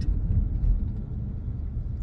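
Low, steady rumble of a car heard from inside the cabin.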